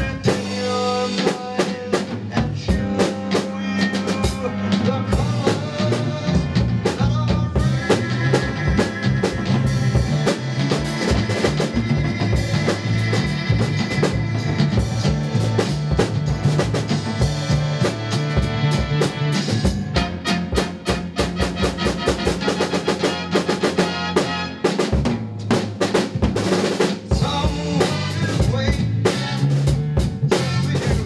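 Live band playing an instrumental passage: a DW drum kit keeps a steady rock beat on kick, snare and cymbals, with fills, over bass and other instruments holding pitched notes.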